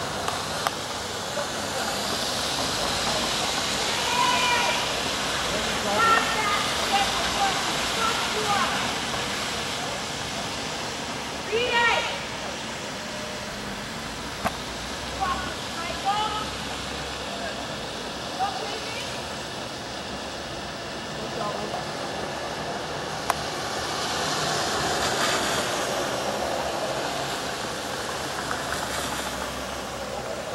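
City street ambience: traffic passing below, swelling twice as vehicles go by, with distant, indistinct voices calling out now and then.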